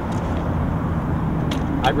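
Steady low outdoor background rumble, with a short click about a second and a half in and a man's voice starting near the end.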